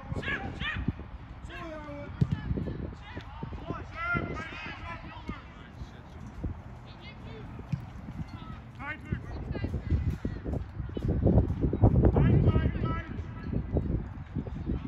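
Scattered shouted calls from players and people along the touchline, short and far off, over a low uneven rumble of wind on the microphone that is loudest a little after ten seconds in.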